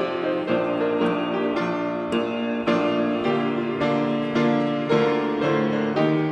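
Piano playing the introduction to a hymn, with chords struck about twice a second.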